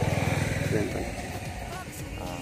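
A motor vehicle engine, likely a motorcycle, running with a fast, even low throb that fades away over the second half, as if the vehicle is moving off. A faint voice is heard under it.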